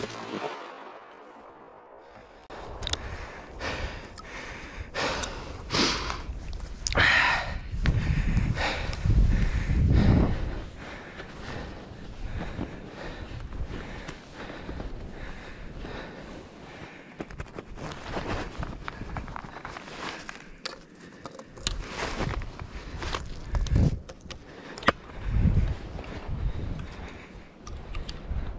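A hunter moving on skis through snow and thick brush: irregular crunching, swishing steps with branches brushing past, and several heavier low thumps.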